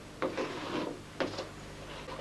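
Rubbing strokes across a classroom blackboard: a longer stroke, then a short one about a second in.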